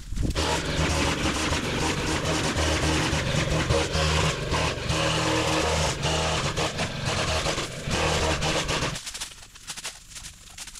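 Gas-powered string trimmer engine running steadily while cutting overgrown brush, dying away about nine seconds in.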